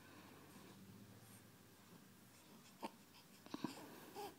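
Near silence: faint room tone with a few soft clicks near the end, one single click and then a quick pair.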